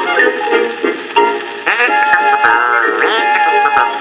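An old recording of a music-hall style song played from a record on a portable record player, in an instrumental passage between sung lines. It sounds dull, with little treble, with a few faint clicks above the music.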